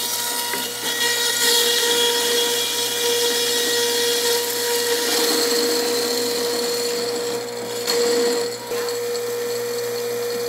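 PURE juicer's electric grinder running with a steady hum while whole spices (cinnamon sticks, star anise, cardamom, pepper and cloves) are forced through it, crunching and grinding. The grinding grows louder about a second in and dips briefly near the end before picking up again.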